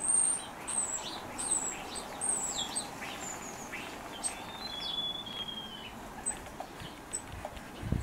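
A small songbird singing: short, high, thin notes about twice a second, each falling slightly, for the first few seconds, then one longer thin whistle in the middle and a few scattered chirps near the end.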